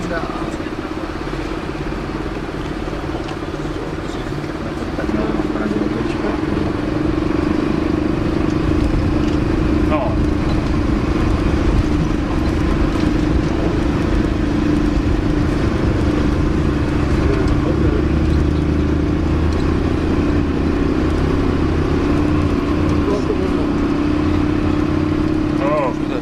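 Bus engine heard from inside the cabin, running under load as the bus drives through a river ford; the drone steps up in loudness about five seconds in and then holds steady.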